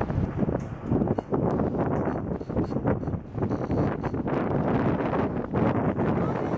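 Wind buffeting the microphone: a steady rushing noise with many small knocks and crackles through it.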